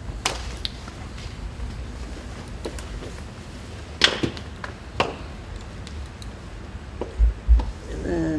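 Quiet room tone with a few sharp clicks and knocks, the loudest about four and five seconds in, and two low thumps near the end.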